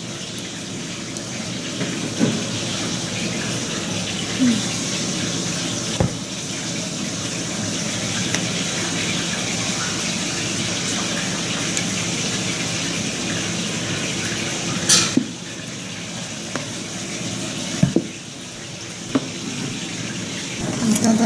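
A steady hiss that drops away about fifteen seconds in, with a few sharp clicks; the loudest click comes just as the hiss drops.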